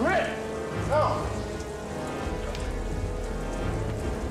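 Steady downpour of rain mixed with film score music. Two short rising swoops come near the start, about a second apart.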